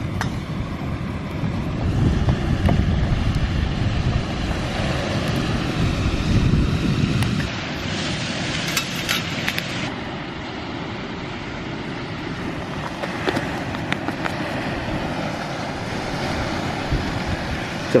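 Wind buffeting the microphone over a steady rushing noise, gustier for the first several seconds, with a few short clicks about eight to ten seconds in.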